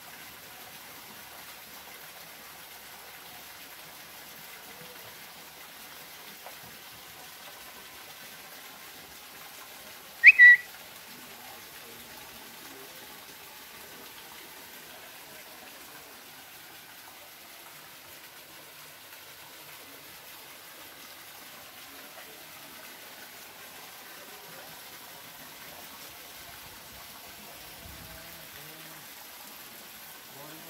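Faint, steady water noise from a stingray holding tank, broken about ten seconds in by one brief, high-pitched whistle that is by far the loudest sound.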